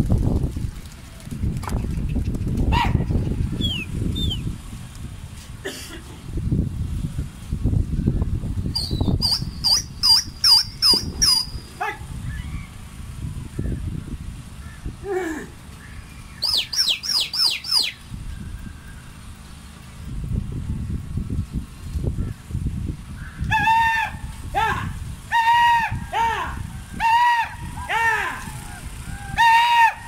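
A flock of domestic pigeons taking off in a mass of wingbeats, under a gusty wind rumble on the microphone. Short runs of rapid high chirps come about ten and seventeen seconds in, and a string of about eight repeated pitched calls fills the last few seconds.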